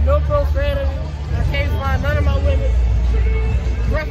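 People talking close to the microphone over crowd chatter, with a heavy low rumble underneath.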